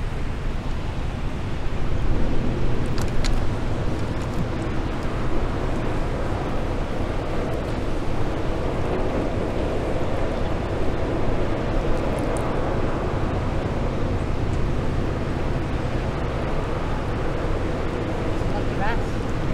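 Steady low rumble of a small cargo ship's engine as the ship comes slowly in through the harbour entrance, mixed with wind on the microphone.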